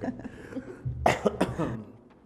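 A person coughing twice, about a second in, the two coughs less than half a second apart.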